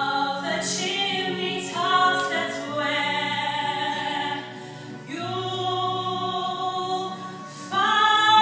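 A woman singing a slow solo vocal line in held notes, with choir voices beneath her, in a church's reverberant acoustic.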